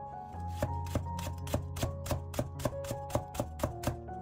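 Chinese cleaver slicing a green onion into thin rings on a wooden cutting board: a steady run of quick knocks, about four a second, starting about half a second in, over soft background music.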